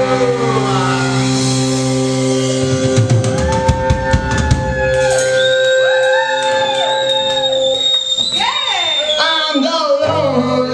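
Live punk rock band on amplified electric guitars and a drum kit: held, ringing guitar notes with a flurry of drum and cymbal hits in the middle, then a steady high whine over the last few seconds.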